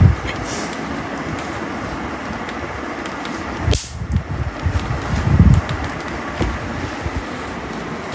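An electric mosquito-swatter racket gives one sharp snap a little under four seconds in, over a steady fan-like hiss. Low bumps on the microphone come about a second later.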